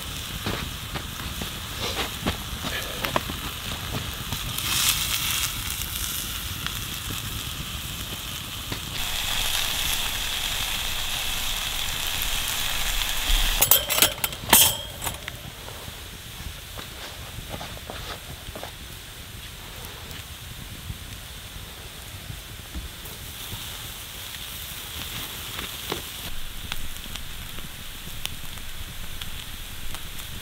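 Oak campfire crackling and popping, with stretches of sizzling from a frying pan of potatoes and mushrooms warming over the flames. Around the middle comes a short cluster of sharp knocks, the loudest sounds here.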